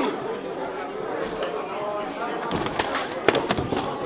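Boxing gloves landing in an exchange of punches: a quick run of sharp slaps, thickest in the second half, over background crowd chatter.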